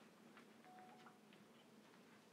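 Faint laptop keyboard typing: a few irregular key clicks over near-silent room tone, with a brief faint steady tone about midway.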